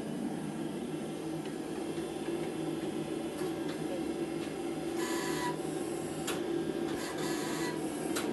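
Bladesmith's forge furnace running at full power with a steady, even hum. A few sharp metallic clicks are heard, and two short raspy bursts come about five and seven seconds in.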